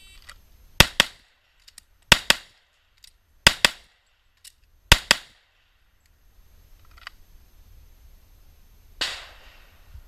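A shot timer's short start beep, then a handgun fired about six times, mostly in quick pairs, over about four seconds. A brief rustling noise about nine seconds in.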